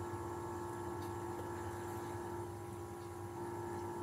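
Quiet, steady room hum with a constant low tone, from background electrical equipment; no distinct handling noises stand out.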